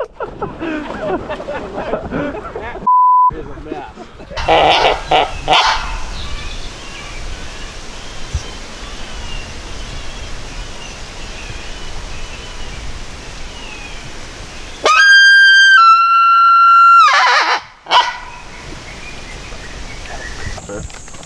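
Talk and laughter, cut by a short single-pitch censor bleep about three seconds in. Near the end comes a loud, brassy two-note blast lasting about three seconds, the second note slightly lower than the first.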